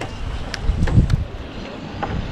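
Wind buffeting the microphone: a low rumble that swells about a second in, with a couple of faint clicks.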